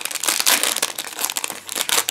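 Foil wrapper of a Yu-Gi-Oh! Speed Duel tournament pack crinkling in a dense run of sharp crackles as the pack is handled and opened.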